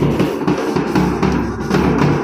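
Procession band music: a large bass drum struck with a mallet and a snare drum keep a steady beat under a horn playing the tune.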